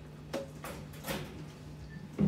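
Two brief knocks, under a second apart, over a steady low room hum.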